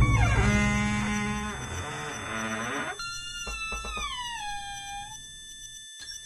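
Eerie horror-film score: a loud low stinger dies away slowly under sustained dissonant tones, and about halfway through, a cluster of pitched tones slides slowly downward while a few faint ticks sound.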